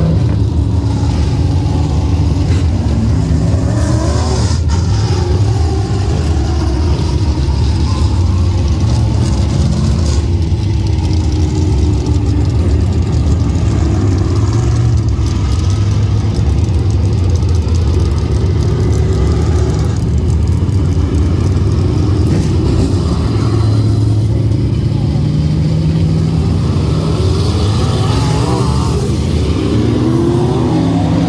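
Open-wheel dirt modified race cars running hot laps on a dirt oval. Their V8 engines are loud and continuous, rising and falling in pitch as they accelerate down the straights and back off into the turns.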